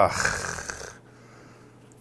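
A man's long breathy sigh, "haa...", fading out over about a second.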